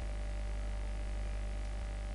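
Steady low electrical mains hum with a faint hiss behind it, the background noise of the recording setup.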